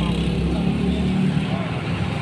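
A steady low engine hum, like a motor vehicle running nearby, with faint voices in the background.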